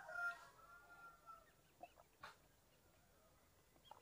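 A faint, drawn-out bird call in the first second or so, followed by a couple of soft clicks; otherwise near silence.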